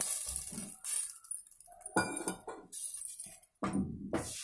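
Liquid poured from a steel vessel into an aluminium pressure cooker, in short splashing spurts, with a few metal clinks of the vessels that ring briefly.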